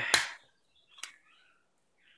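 Two sharp plastic clicks, a loud one just after the start and a fainter one about a second in, as a plastic bumper case is snapped onto the edges of a Nexus 6 smartphone.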